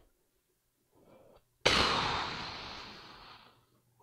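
A person's short breath in, then a long, heavy sigh blown out close into the microphone. The sigh starts suddenly and loud and fades away over about two seconds.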